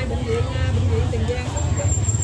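Open-air market ambience: people talking in the background over a steady low rumble.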